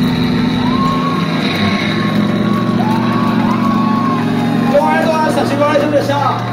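Steady low drone of the band's amplifiers left humming after the rock song stops, with voices calling out over it.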